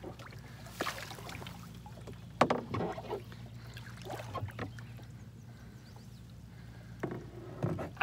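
Scattered knocks and scrapes of a person shifting about in a plastic kayak and handling the paddle in shallow water. The loudest knock comes about two and a half seconds in, and a few more come near the end.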